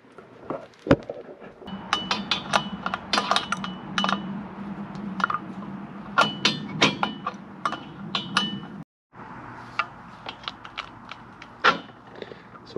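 Irregular sharp metal clicks and clinks as an amber turn-signal lamp is unbolted from a tractor's ROPS bracket: a wrench working the nut and lock washer, over a faint steady hum. The sound cuts out for a moment about nine seconds in.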